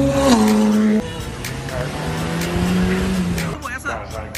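McLaren 720S twin-turbo V8 running past at moderate revs, its note dropping in pitch about a third of a second in, then cutting off suddenly about a second in. Another car's engine follows, lower and steadier, fading out near the end, with background music ticking evenly underneath.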